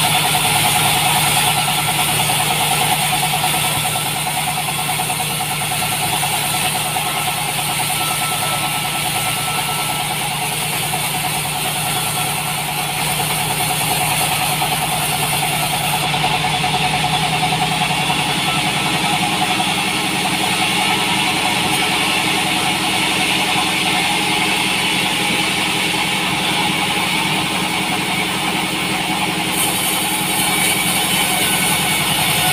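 Large 36-inch sawmill bandsaw running steadily as its blade saws a salam wood log into beams. Its low hum changes a little about two-thirds of the way through.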